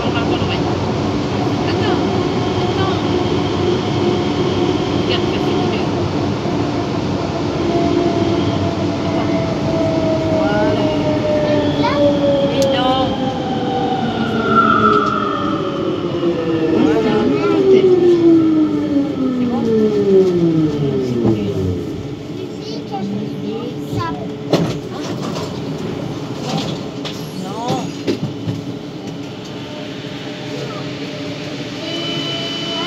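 Siemens/Matra VAL 208 rubber-tyred metro braking into a station: the electric drive's whine falls steadily in pitch over the rolling noise and dies away about two-thirds of the way in as the train stops. After it stops there are scattered light clicks.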